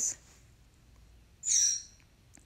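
A caged pet bird gives one short, high call about one and a half seconds in.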